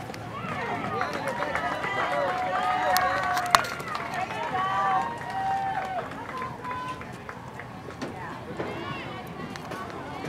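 Several young girls' voices calling and cheering at once from the softball players, loud for about six seconds and then dying down. One sharp smack stands out about three and a half seconds in.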